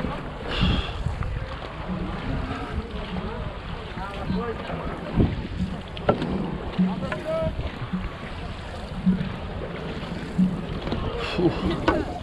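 A dragon-boat crew paddling at racing pace: paddles splashing and water rushing along the hull, with a rhythmic low beat a little faster than once a second in time with the strokes. Wind buffets the microphone, and there are brief shouts from the crew.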